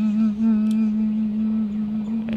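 A person humming a slow tune, holding one long steady note that wavers slightly near the start.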